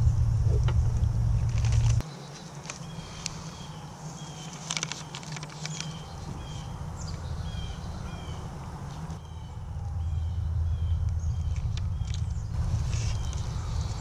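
A low rumble that cuts off suddenly about two seconds in. Then a bird calls a short chirp over and over, about twice a second, with crinkles of a plastic cookie-dough package being handled.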